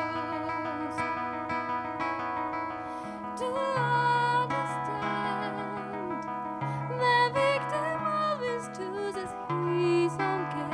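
A female jazz vocalist sings a slow melody over a Godin electro-acoustic guitar playing chords above held bass notes. Her sung line comes forward about three and a half seconds in.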